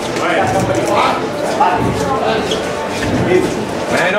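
Indistinct voices of several people talking over one another.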